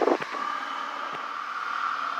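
Steady drone of the Piper Saratoga II TC's turbocharged six-cylinder engine and propeller in cruise, heard thin and filtered through the headset intercom as a constant hum with faint hiss.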